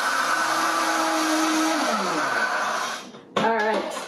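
Vitamix high-speed blender running steadily while blending a thick avocado crema. The motor is switched off about two seconds in and its pitch falls as it winds down to a stop.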